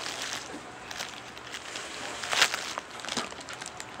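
Package wrapping rustling and crinkling as it is handled, with irregular small crackles and one louder crackle about two and a half seconds in.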